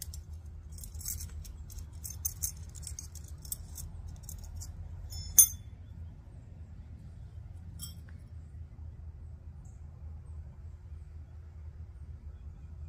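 Metal tent stakes clinking together in a hand, a scatter of small light clinks for about five seconds, then one much louder sharp clink, and a single faint one a couple of seconds later.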